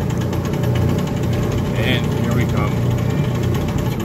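Small antique-style ride car running along its guide track with a steady low engine hum, and a few brief voices in the background about halfway through.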